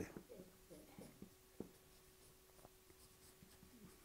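Faint marker writing on a whiteboard: a few short strokes and taps of the pen tip, most of them in the first second and a half.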